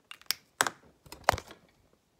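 A phone being picked up and handled: a run of sharp knocks and rubs against the body and microphone, with two louder knocks about half a second and just over a second in.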